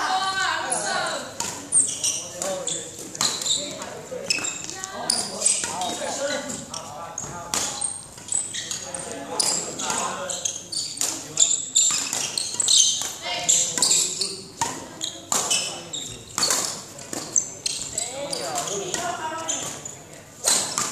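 Irregular footfalls and stamping lunges of badminton shadow footwork on a hard indoor court floor, with voices talking throughout.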